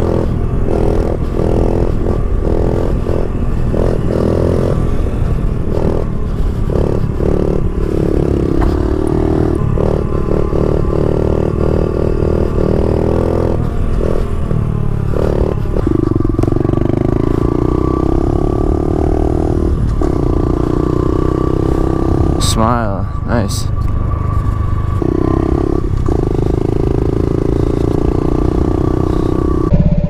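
Honda CRF70 pit bike's small single-cylinder four-stroke engine running under way, its pitch rising and falling as the throttle is worked. There is a steady climb in pitch just past the middle and a brief quick warble about two-thirds through.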